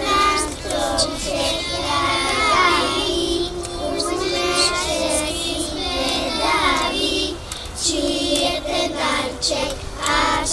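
A group of young children singing a song together, with a short break between phrases about seven seconds in.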